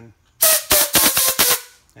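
Compressed air blown through a methanol fuel injector in several short, loud blasts of hiss with a pitched buzz on them, clearing the alcohol out of the injector.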